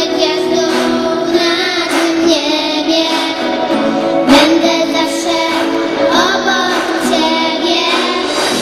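Three young girls singing a Polish Christmas carol together into microphones.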